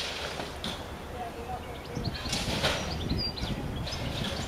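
Small birds chirping over a steady low rumble, with a louder rush of noise about two to three seconds in.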